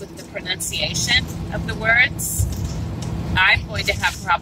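Voices talking indistinctly over the steady drone of a vehicle's engine and road noise, heard from inside the moving vehicle.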